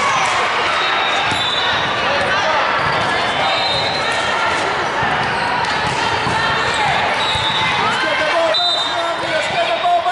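Reverberant din of a large sports hall with volleyball games in play: many voices talking and calling, volleyballs being struck and bouncing on the hardwood courts, and sneakers squeaking now and then.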